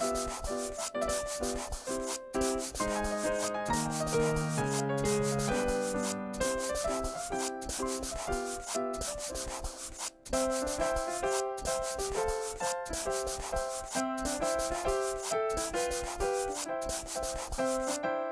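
Rapid scratchy scribbling of coloring in with a marker, many short rubbing strokes in a row, over a simple keyboard tune. The scribbling breaks off briefly about ten seconds in.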